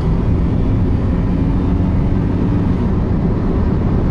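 Cabin noise of a 1995 Audi A6 wagon with a 2.8-litre V6 driving at a steady speed: an even engine and road rumble, with a faint steady hum that fades out about three seconds in.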